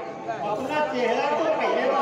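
Speech only: actors' voices talking over one another, with no other sound standing out.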